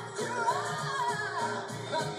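End-credits song: a singing voice carries a gliding melody over a steady instrumental backing with a repeating bass pattern.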